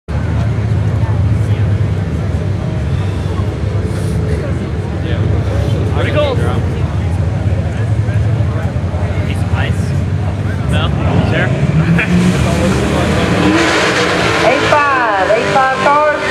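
Drag cars idling at the start line with a deep, steady engine rumble. About twelve seconds in, the engines rev up and the sound grows louder and rougher. Spectators talk over it.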